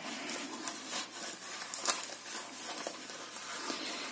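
Soft rustling and scuffing of a knitted sock being stretched and pulled over a child's shoe, with a few faint clicks from handling.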